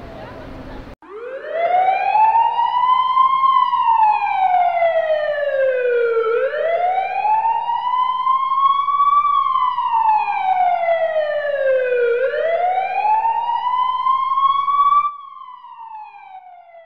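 Emergency vehicle siren on a slow wail, rising and falling in pitch about every six seconds. It starts about a second in and cuts off near the end, its last fall carrying on more faintly.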